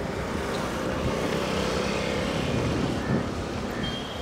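Road traffic going by, with a motor vehicle's engine humming past close by through the middle, over a steady rumble of wind on the microphone.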